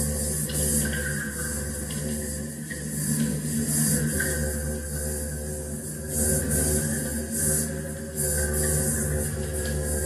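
Electronic piece made by granular synthesis: steady low drones under layered sustained tones, with a grainy high hiss that swells and fades in short bursts.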